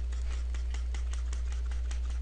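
Steady low electrical hum in the recording, with faint irregular clicks scattered over it.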